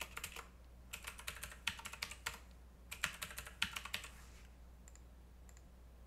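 Computer keyboard typing in several short bursts of keystrokes, fading out about four and a half seconds in.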